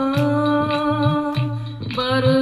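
Devotional bhajan: a woman's voice holding a long sung note through a microphone over a steady drum beat of about three strokes a second. The note breaks off briefly near the end and a new one begins.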